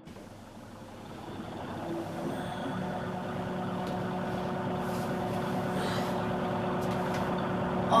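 A steady low hum made of several held tones, fading in over the first two seconds and then holding level.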